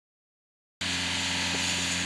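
Silence, then a little under a second in, a steady background hum with hiss cuts in and holds at an even level: a constant low mechanical drone, like a nearby machine running.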